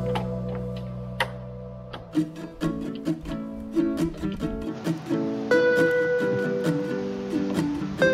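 Background music on guitar: a steady run of plucked notes.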